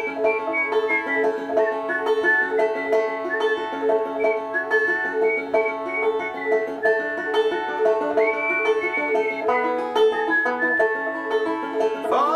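Five-string banjo capoed at the second fret, picked in a steady run of quick notes through the instrumental solo over G, E minor, C and D chords, with no singing.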